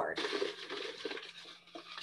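Rustling and crinkling of paper cards as one is picked from the pile, a dense scratchy patter that fades out within about a second.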